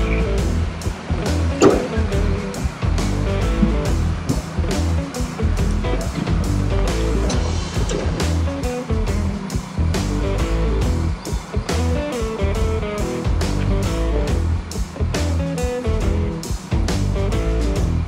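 Background music with a steady beat, a strong bass line and a moving melody.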